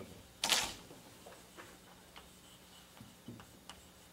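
A short rustling noise about half a second in, then a few faint scattered clicks and taps over a low steady hum.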